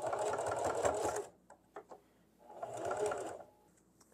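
Singer electric sewing machine stitching in two short runs of about a second each, with a pause and a few light clicks between them, as it sews a straight stitch across the folded end of a linen strip.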